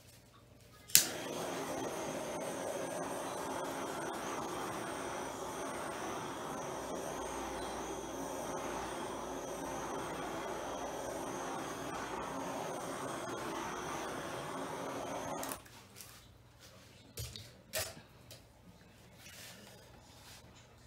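A small handheld electric heat gun switched on with a click about a second in, running steadily with a faint high whine, and switched off suddenly after about fourteen seconds. A few light knocks follow.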